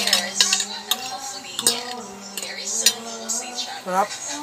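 Metal spoon and fork clinking and scraping against a ceramic plate while eating rice and fish, with several sharp clinks through the moment.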